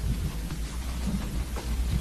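Background noise of a crowded courtroom: a steady hiss over a low rumble, with faint scattered murmuring.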